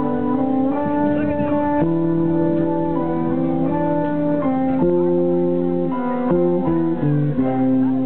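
Live band music: slow, held chords from guitar and keyboards, changing every second or two.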